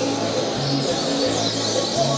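Many caged songbirds singing and chirping at once, a dense overlapping chatter of short high calls. A low steady hum that shifts pitch in steps runs underneath.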